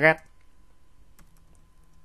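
A few faint computer-keyboard key clicks, spaced unevenly, as a ticker symbol is typed into a charting program. The clearest click comes a little over a second in, after one spoken word at the start.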